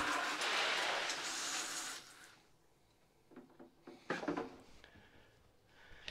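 Water spraying from a hose nozzle into a bucket: a steady hiss that cuts off about two seconds in.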